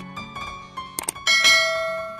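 Subscribe-button animation sound effects: a short chiming jingle with a sharp click about a second in, followed by a bell ding that rings out and slowly fades.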